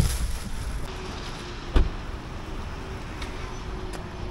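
A car door shutting once with a single thump about two seconds in, over a steady low background hum.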